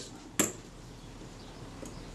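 A single sharp, light metal click about half a second in, from small parts of a camera's metal top cover being handled during reassembly, followed by quiet room tone.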